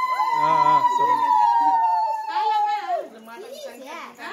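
A single long, steady high-pitched note, sinking slightly in pitch before it stops about three seconds in, with voices talking over it.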